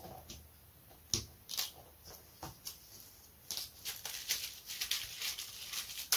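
Light clicks and crackles of a balsa wing frame being handled and lifted off its paper plan, sparse at first and more frequent in the second half.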